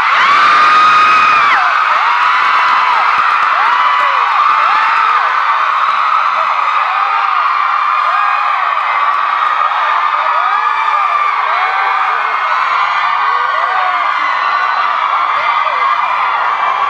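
A crowd of fans screaming and cheering in high-pitched voices, many overlapping shouts. It is loudest in the first second or so and carries on steadily throughout.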